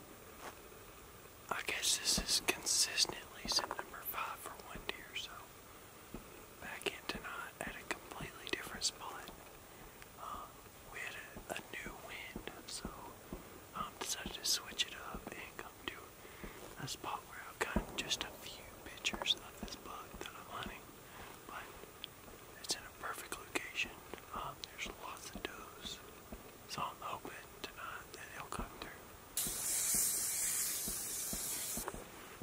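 A man whispering, on and off, with small mouth clicks. Just before the end a steady hiss starts suddenly.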